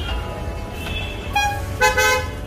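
Street traffic rumbling, with several short car horn honks at different pitches; the loudest honk comes near the end.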